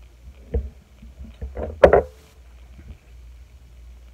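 Handling noise from makeup items being put down and picked up: a dull thump about half a second in, then rustling and one loud knock just before two seconds in.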